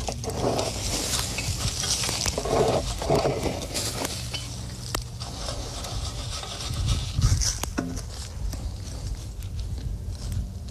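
Gloved hands scraping and crumbling loose soil and dry corn-stalk litter over a buried foothold trap, blending in a dirt-hole set: continuous rustling and scraping with scattered small clicks.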